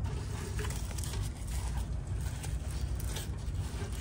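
Faint rustling and light handling noises from a paper towel and cocoons being moved about in a glass dish.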